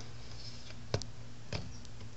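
Low steady hum of a workshop room with two small clicks, the first about a second in and the second about half a second later.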